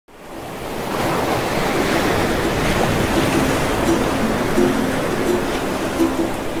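Ocean surf, a steady rushing wash that fades in over the first second. Soft plucked ukulele notes begin about halfway through.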